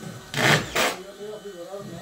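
Two short hissing bursts, the first longer and louder, the second brief, a little under a second in, over quiet talk among workers.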